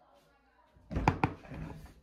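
Two sharp thumps in quick succession about a second in, inside a small elevator cab.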